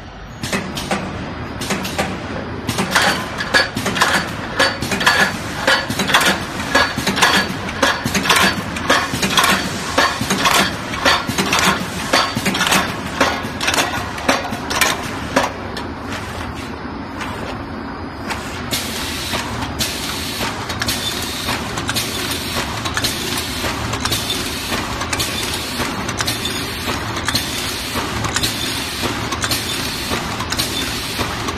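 Automatic horizontal cartoning machine running, with pneumatic and mechanical strokes clacking at about two a second over a steady machine noise. About halfway through, the strokes fade into a steadier running sound.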